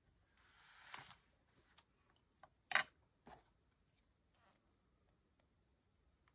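Craft materials being handled on a desk: a spiral-bound art journal is slid and turned on a cutting mat with a rising rustle that cuts off about a second in, then a few light clicks and taps as a pencil is set down, the loudest tap near the middle.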